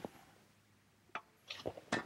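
A few faint, sharp taps: one about a second in and a short cluster near the end, the last one the loudest.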